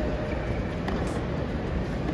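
Tennis rally heard from high in a stadium: faint racket strikes on the ball, about one every second, over a steady low rumble of stadium ambience.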